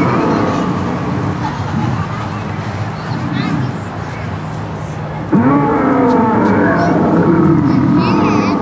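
Animatronic dinosaur's recorded call played from a loudspeaker: a long, pitched bellow that starts suddenly about five seconds in, over a steady background of low sound effects.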